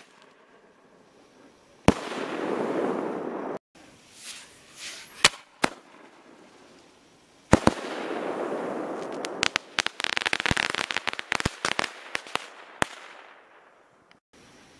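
Homemade 2.5-inch aerial ball shells firing. A lift-charge bang is followed about two seconds later by a sharp burst bang with a long rolling echo, and a later shell bursts the same way. After that shell's burst come about three seconds of dense crackling from its crackle stars.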